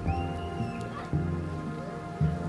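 Background music with sustained held notes and a low bass note about once a second.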